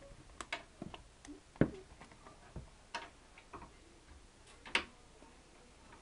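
Irregular light clicks and knocks of a cardboard feeder-mouse box being bitten and pulled about by a California king snake, its coils shifting in dry aspen bedding; the sharpest knock comes about a second and a half in.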